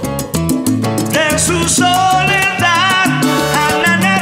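Salsa music: an instrumental stretch of the song, with a steady bass and percussion rhythm and a wavering melody line coming in about a second in.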